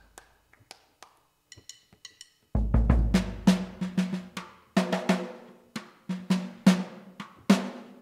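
Sampled acoustic drum kit, Native Instruments' Abbey Road Vintage Drummer in Kontakt 7, played live: a few faint taps, then about two and a half seconds in a bass drum hit with a long low decay, followed by a quick run of drum strikes.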